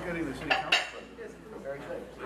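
Tableware clinking: two sharp clinks close together about half a second in, over a murmur of voices in the room.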